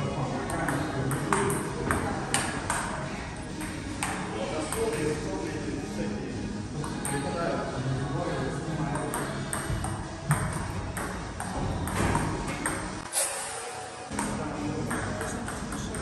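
Table tennis rally: the ball clicking sharply off the paddles and the table, a string of hits spaced irregularly about a second apart, over background music.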